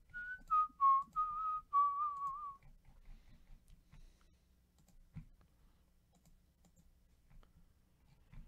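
A person whistling a short tune of about six notes, starting on the highest note, for about two and a half seconds. Then a few faint computer mouse clicks, one louder about five seconds in.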